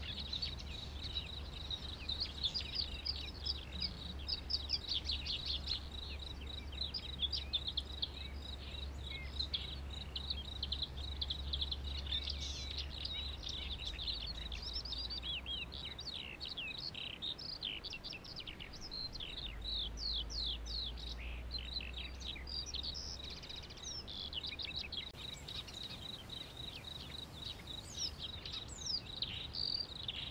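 Birds chirping in a steady stream of short, quick calls that slide down in pitch, over a steady high-pitched whine and a low hum.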